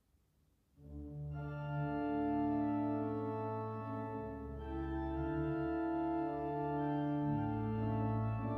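Pipe organ entering after about a second of near silence, playing slow sustained chords over a steady bass line, with more upper voices joining almost at once.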